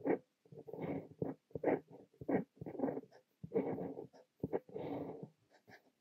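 Fine-nib fountain pen scratching across notebook paper, writing Korean characters in a run of short strokes with brief pauses between them.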